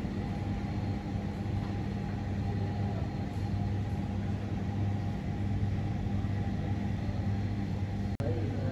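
Steady low hum of supermarket ambience: refrigerated display cases and air handling droning evenly, with no distinct events.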